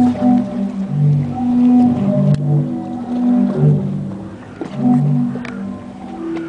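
Zadar Sea Organ: wave-driven pipes under the stone steps sounding through the slots, several steady low tones at different pitches overlapping and swelling and fading in irregular surges as the waves push air through them.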